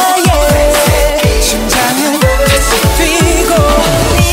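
K-pop song with a male voice singing a wavering melody over an R&B beat of deep kick drums.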